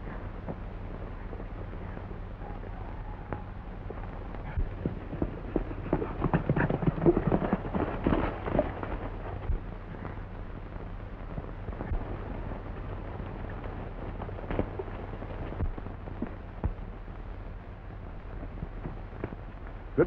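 Scuffling and blows of a fistfight on an old 1930s film soundtrack: scattered short thuds over a steady low hum and hiss. The thuds come thickest about six to eight seconds in.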